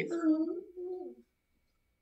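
A man's voice drawing out a hesitating, hummed "if… hmm", one long pitched sound that wavers and trails off a little over a second in.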